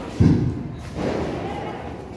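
A single heavy, dull thump about a quarter second in, followed by softer background sound.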